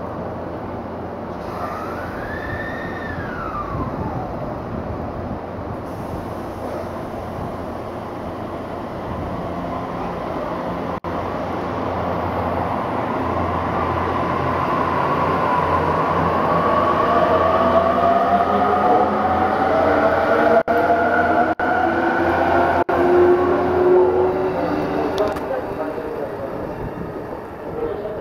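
JR East E257 series 500 limited express electric train pulling away. Its inverter-driven traction motors whine in several tones that climb steadily in pitch and grow louder as it accelerates, then fade as it draws away. About two seconds in, a short tone glides up and then back down.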